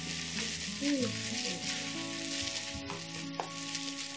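Soft background music with held notes and a few sliding tones, over a steady hiss.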